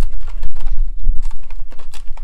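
Wind buffeting the microphone: a loud, uneven low rumble. Over it come short clicks and rustles of a coil of electrical cable being handled.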